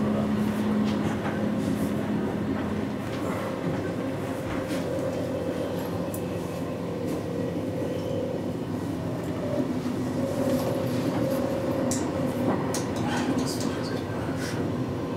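Intercity train running along the track, heard from on board: a steady rumble with a low hum and scattered clicks of the wheels over rail joints and points.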